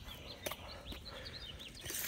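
Small birds chirping: a quick run of short, high chirps.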